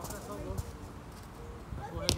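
Players' voices calling out across the pitch, with soft thuds of a football being kicked.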